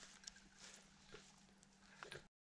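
Near silence, with a few faint soft clicks and rustles.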